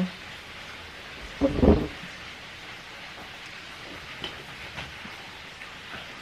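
Steady background hiss with a single short, loud vocal sound from a person about a second and a half in.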